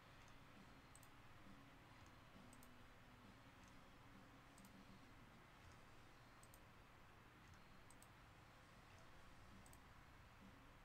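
Faint computer mouse clicks, several of them a second or two apart, over near-silent room tone: a randomize button being clicked over and over.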